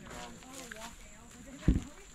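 Faint distant voices, then a single low thump about three-quarters of the way through.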